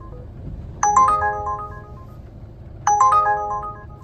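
Uber Driver app's incoming ride-request alert playing from a dashboard tablet: a bright multi-note chime that repeats about every two seconds, sounding twice, each ringing out over about a second. A low rumble from the car runs underneath.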